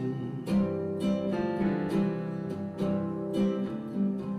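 Acoustic guitar strummed in a steady rhythm, about two or three strokes a second, over sustained chords from a Yamaha digital keyboard: an instrumental passage of a live folk song between sung lines.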